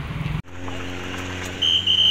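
Motor vehicle engines running at the roadside. About half a second in, an abrupt cut gives way to a steadier low engine hum, and a short high-pitched tone sounds near the end.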